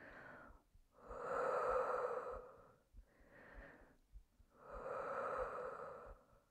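A woman taking slow, deep breaths: two long, louder breaths of about two seconds each, with a quieter, shorter breath between them.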